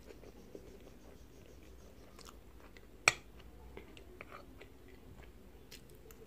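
Close-miked chewing of soft baked pasta with melted mozzarella, with small wet mouth clicks throughout. One sharp clink of the metal fork about three seconds in.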